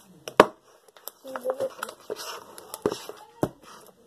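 Hands handling things on a tabletop close to the microphone: a few sharp knocks, the loudest less than half a second in, and some rustling a couple of seconds in, with a brief murmur of a child's voice in between.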